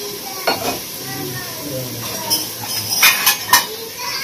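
Metal kitchen utensils clinking and scraping against aluminium pots at a gas stove, over a steady hiss. A sharp clink comes about half a second in, and the loudest clinks come in a quick cluster near the end.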